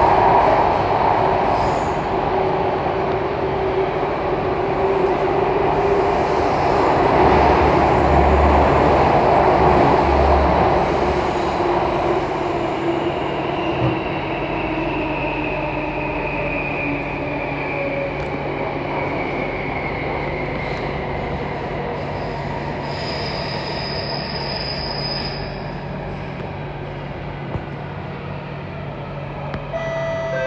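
Alstom Metropolis C830 metro train heard from inside the car, running with a continuous rumble and wheel-on-rail noise. Its motor whine slides slowly down in pitch and the noise eases as the train slows for the station. A brief high squeal comes about three quarters of the way through, and a door chime begins at the very end.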